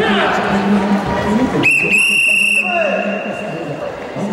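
A single whistle blast, one steady high note lasting about a second and trailing off, signalling a halt in the kumite sparring bout, over hall chatter.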